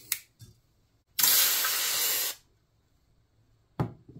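A hot, freshly annealed wire coil is plunged into a quench bath and hisses loudly for about a second, starting suddenly and then fading. A click comes just at the start and a sharp knock near the end.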